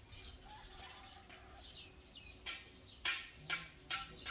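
Small birds chirping, with several sharp knocks in the last second and a half.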